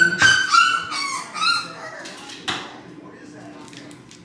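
French bulldog puppy whining from its cage: a run of short, high-pitched whines in the first second and a half, then a single sharp click about two and a half seconds in. The whining comes from a hungry puppy that smells its food being made.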